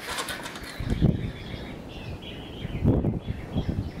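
A few soft knocks and rustling from handling a rifle: its adjustable cheek piece being moved down and the shooter settling his face onto the stock. A faint high wavering tone sounds in the middle.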